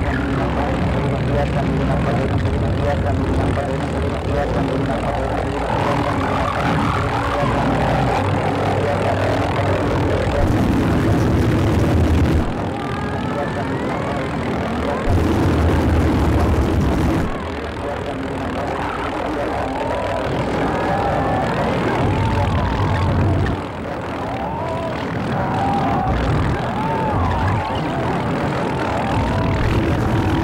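Dense layered sound collage: a steady low drone like a propeller aircraft, with garbled voices and wavering tones over it, switching abruptly several times.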